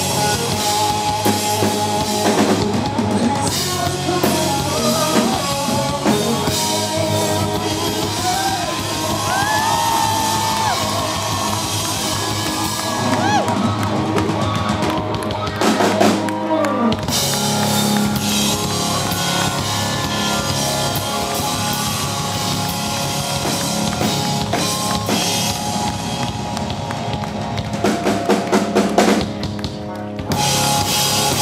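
Live rock band playing an instrumental passage on drum kit and electric guitars, with sliding, bending guitar lines in the middle and a burst of heavier drum hits near the end.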